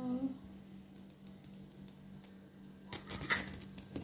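Large kitchen knife cutting down through an iced cake and scraping on the cardboard base beneath, with a few short scratches about three seconds in.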